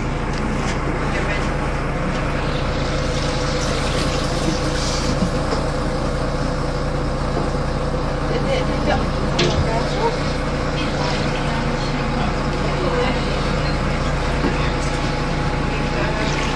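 Inside a moving city bus: the engine and cabin give a steady low drone, with passengers' voices and floodwater sloshing in the aisle.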